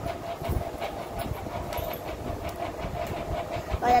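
Electric fan running: a steady hum with an uneven low rumble of its air buffeting the phone's microphone.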